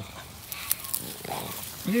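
A dog gives one short grunt a little past halfway, with a few faint clicks before it.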